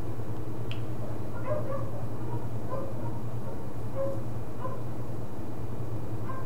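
A steady low hum, with short faint tones scattered through it.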